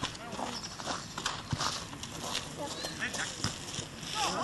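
Football players' distant shouts and calls across the pitch, with a few scattered dull thuds.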